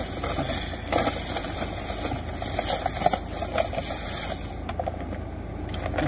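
Rustling and knocking of a clear plastic tub of small apples handled close to the microphone, with many short scrapes and taps that thin out near the end, over the steady low hum of a car engine idling.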